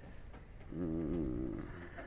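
A low, drawn-out vocal sound lasting about a second, its pitch wavering up and down, over a quiet background.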